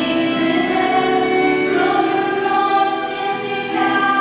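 Two women singing a classical-style duet in sustained, held notes, accompanied by a small string ensemble.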